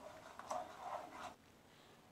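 Faint scraping of a spatula stirring thick tomato jam in a nonstick frying pan, a few soft strokes that stop abruptly about one and a half seconds in.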